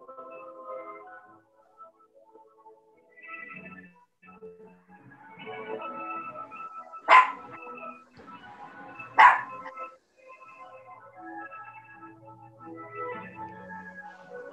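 An instrumental backing track intro plays quietly and sounds thin and broken up, as over a video call. About halfway through come two sharp, loud sounds about two seconds apart.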